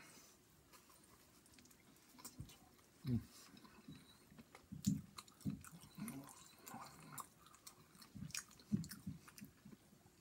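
A man chewing a bite of pizza close to the microphone: faint, irregular chewing with small wet clicks of the mouth.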